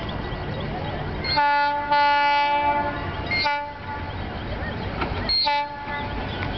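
GT-22 diesel-electric locomotive approaching, its engine rumbling steadily as it sounds its air horn: a long blast of about two seconds starting a second and a half in, then a short blast near the end.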